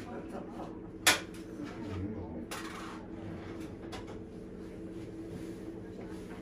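Shop room tone with a steady low hum and faint voices, broken by one sharp clack about a second in, a short rustle around the middle and a few light clicks, the sounds of things being handled.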